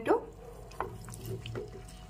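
Wooden spatula stirring capsicum and tomato pieces through a thin yogurt gravy in a non-stick pan: a soft, wet stirring sound with a couple of faint clicks.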